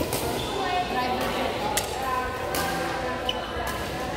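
Badminton rackets striking a shuttlecock in a rally: several sharp cracks about a second apart, in a large echoing hall, with voices in the background.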